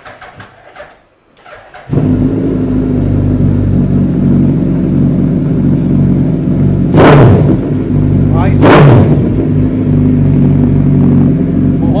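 Suzuki Hayabusa's inline-four engine, fitted with a replica Austin Racing exhaust, fires up about two seconds in and settles into a loud, massive-sounding idle. It is blipped twice in quick revs, about seven and nine seconds in.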